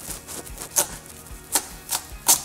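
A knife being forced through a hard, raw spaghetti squash on a wooden cutting board. It makes about three sharp cracks and knocks, with small ticks between them, as the rind gives way.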